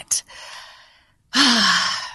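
A woman sighing: a soft breathy exhale near the start, then a louder, partly voiced sigh from about one and a half seconds in that falls away.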